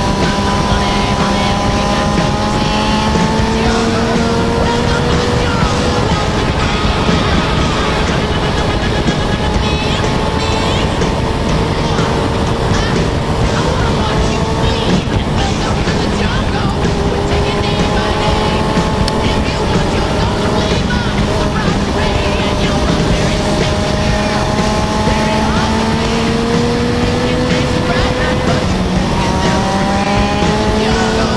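Sportbike engine pulling hard with a heavy rush of wind and road noise. The engine note climbs slowly under acceleration and falls back a few times, about six seconds in, around twenty-two seconds in and near the end.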